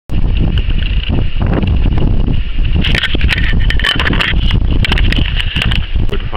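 Wind buffeting the camera microphone as a steady low rumble, with scattered sharp crunches and clicks of shoes shifting on loose pebbles, thickest about halfway through.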